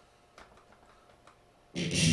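A few faint ticks in near quiet, then, near the end, a distorted electric guitar comes in suddenly and loudly with a low chord.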